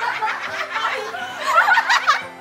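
Several people laughing together in short, broken bursts, easing off about halfway through and swelling again near the end.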